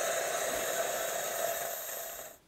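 Bosch Tassimo Style TAS1104GB pod coffee machine running a first-use water cycle with its water-only service disc: a steady hiss of the pump pushing hot water into the jug, tapering off near the end as the cycle finishes.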